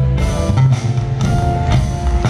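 Live R&B/soul band playing: an electric bass line stands out in the low end over a drum kit, with held chords from the other instruments above.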